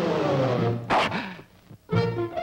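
A cartoon lion's roar, rough and sliding down in pitch, that stops just under a second in and is followed by a short, sharp burst. After a brief pause, brass music starts at the very end.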